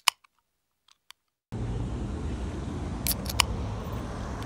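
Near silence with a couple of faint clicks, then about a second and a half in a steady outdoor rumble and hiss of a parking lot by a road begins, with a few sharp clicks a little after three seconds.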